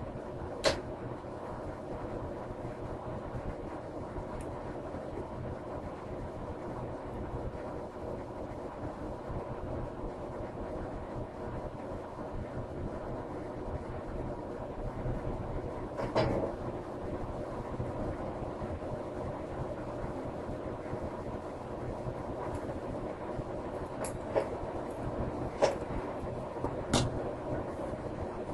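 A steady background hum with a few sharp little clicks of metal tweezers on small brass photo-etched parts, the loudest about a second in and about halfway through.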